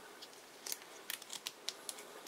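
Faint, sharp plastic clicks from a Transformers Titans Return Shockwave action figure as its joints are bent and parts folded to transform it. About half a dozen irregular clicks start just under a second in.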